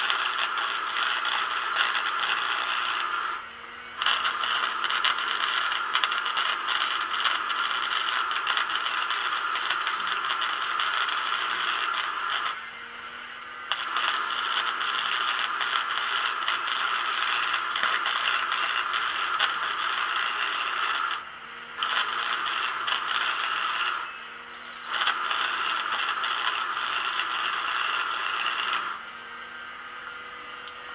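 Electric arc welder laying a bead on steel angle, a steady crackling sizzle in five stretches broken by short pauses as the arc is struck and broken; a faint low hum from the welder fills the gaps.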